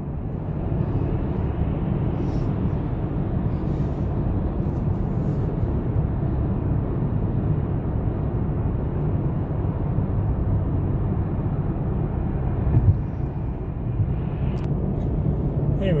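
Steady road noise inside a car cruising on a freeway: low tyre and engine drone at highway speed, with a brief knock about 13 seconds in.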